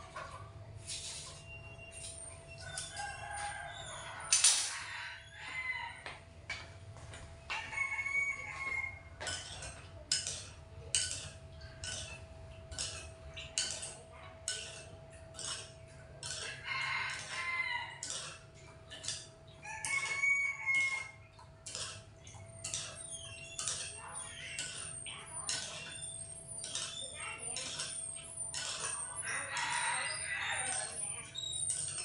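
A rooster crowing three times, each crow about two seconds long and roughly thirteen seconds apart, with chickens clucking and a run of short clicks in between.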